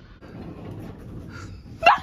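Low rustling of people moving, then near the end a brief, loud, high-pitched yelp of fright from someone being jumped out at.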